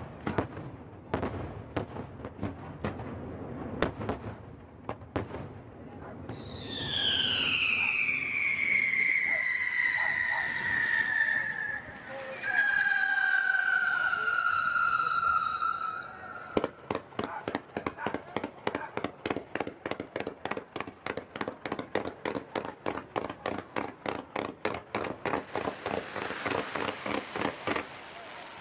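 Fireworks display: scattered bangs of bursting shells, then two long whistles that fall in pitch, each lasting several seconds. After that comes a rapid string of sharp reports, about four a second.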